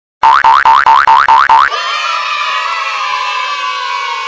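Cartoon 'boing' sound effects from an animated channel intro: a quick run of short rising boings, about five a second, then a long, bright held tone that sags slowly in pitch.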